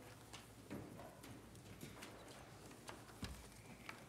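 Near silence, with faint scattered small clicks and knocks.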